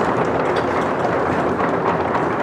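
Audience applauding, steady dense clapping.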